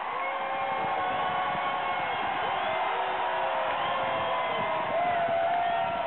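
Stadium crowd cheering and shouting, with several voices holding long yells over a steady roar.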